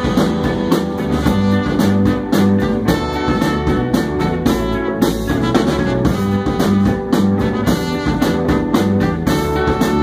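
Live band playing an instrumental jazz-soul passage, with a trumpet lead over organ and hand drums on a steady beat.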